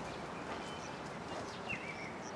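Quiet outdoor ambience with a few faint, short bird chirps and one slightly louder call near the end, over a steady low hiss.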